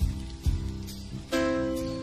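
Instrumental passage of a slow blues song with no singing: sustained guitar chords change about every second over heavy low bass-and-drum hits on the beats.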